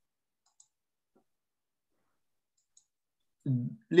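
Near silence with two faint short clicks from a computer as the presentation slide is advanced. A man's voice starts speaking near the end.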